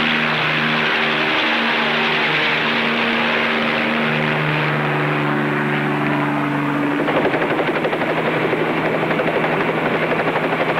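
Bell 47 light helicopter taking off and flying away: a steady piston-engine drone, with a fast, even rotor chop setting in about seven seconds in.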